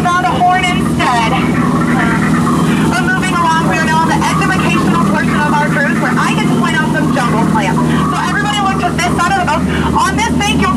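Tour boat's engine running with a steady low hum while voices talk over it.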